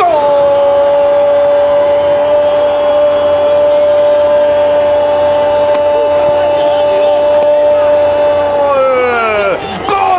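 Spanish-language football commentator's drawn-out goal call, one long held note of about eight and a half seconds that slides down and fades near the end, hailing a goal just scored.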